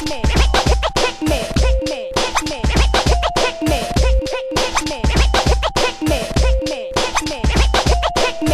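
Instrumental hip hop beat with turntable scratching: quick back-and-forth stutters of a record over a steady heavy kick drum and a repeating sampled melody line.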